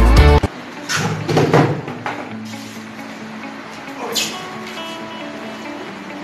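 Background music that cuts off about half a second in, followed by cardboard packaging being handled and pulled from a box: a cluster of rustles and scrapes about a second in and another scrape about four seconds in.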